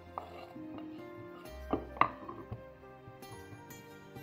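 Kitchen knife and wooden cutting board knocking and scraping as diced tomatoes are pushed off the board into a glass bowl, with two sharp knocks about two seconds in, over background music.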